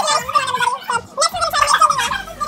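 A child's voice making a wordless, wavering, gargle-like noise.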